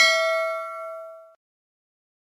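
Notification-bell 'ding' sound effect of a subscribe-button animation: one bright chime that rings on and fades away, dying out about one and a half seconds in.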